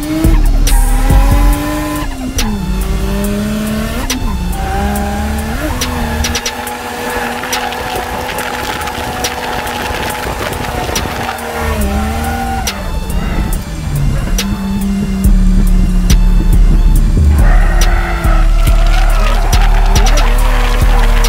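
Turbocharged RB30ET straight-six of an R31 Skyline wagon heard from inside the cabin while drifting, its note repeatedly dropping and climbing again, with tyres squealing; it gets louder in the last few seconds. Music with a heavy bass plays underneath.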